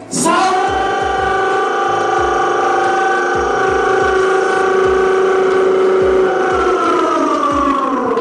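A man's voice holding one long, high sung note into a microphone for nearly eight seconds, easing slightly down in pitch at the end, over a low beat about twice a second.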